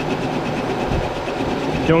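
Benchtop drill press running, its bit cutting through a metal trellis arm under steady hand feed: an even motor drone with a light, regular chatter.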